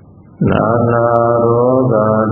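A man's voice chanting Buddhist paritta in Pali, coming in about half a second in after a short pause and holding a long, steady note.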